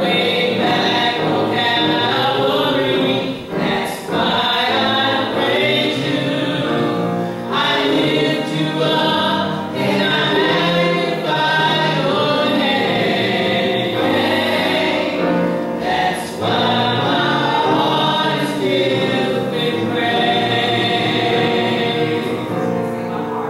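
A small gospel vocal group of three women and a boy singing a song together, with short breaks between phrases.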